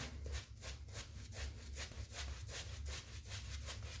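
Badger-hair shaving brush working lather over a stubbled face: faint brushing in quick, even strokes, about four or five a second.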